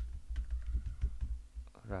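Computer keyboard typing: an irregular run of keystrokes with dull thuds under them.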